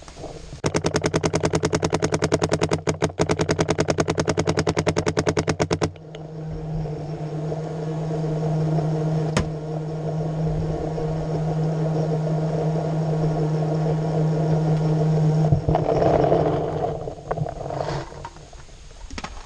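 Paintball marker firing a rapid, even string of shots for about five seconds, with one short break partway through. A steady droning hum follows, with a single sharp click partway through it.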